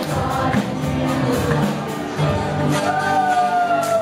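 Live gospel worship song: several singers with acoustic and electric guitar accompaniment. Near the end a long sung note is held, drifting slightly down in pitch.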